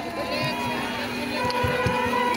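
Crowd of people talking and calling out together, with low thumps; about halfway in, a steady sustained tone with several pitches comes in and holds.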